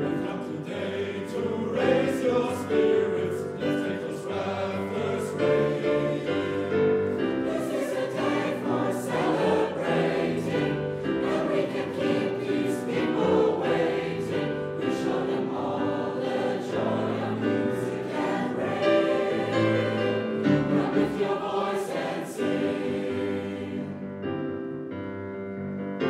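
Mixed school choir of teenage voices singing, accompanied by grand piano.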